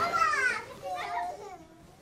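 Young girls' excited, high-pitched squealing and laughing, the voices sliding up and down, loudest in the first half and dying away near the end.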